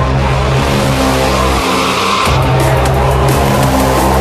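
Drum and bass music: a deep sustained bass line under a gritty, engine-like mid-range synth. The bass drops out briefly a little before halfway, then returns with busier drum hits.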